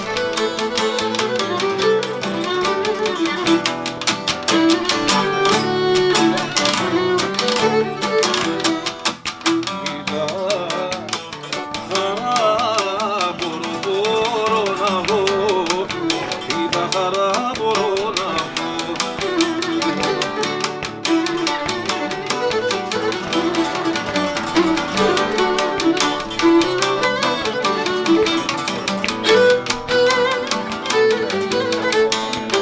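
Cretan lyra bowing an instrumental syrtos dance tune, accompanied by a laouto and an acoustic guitar keeping a steady plucked and strummed rhythm.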